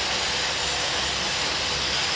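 Steady hiss over a low rumble, unbroken and without distinct events.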